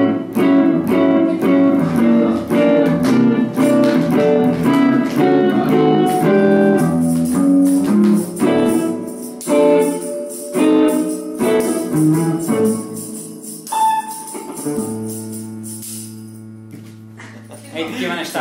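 Semi-hollow electric guitar playing a swing-style jazz passage. It opens with a busy run of notes and chords for about eight seconds, moves to sparser phrases, and ends on a chord left ringing for the last few seconds.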